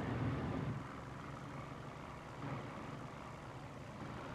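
Small motorboat's engine running steadily as the boat gets under way in forward gear, a low hum that is a little louder in the first second, then settles lower.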